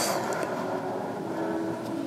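A long, slow open-mouth exhale: a steady breathy rush of air, part of a deep controlled breathing count.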